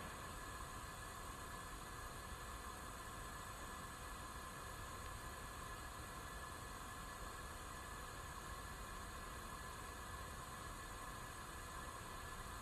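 Faint, steady hiss with no distinct events.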